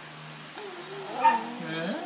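A baby vocalizing in a drawn-out voice that rises and falls in pitch, with a brief louder sound partway through.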